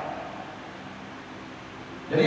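Steady room tone: an even hiss with a faint low hum.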